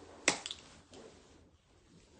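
A sharp finger snap about a quarter second in, with a softer second click just after it.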